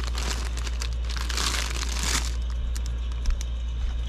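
Plastic bags and packaging crinkling and rustling as a hand pushes through items on a wire shelf, loudest from about one to two seconds in, over a steady low hum.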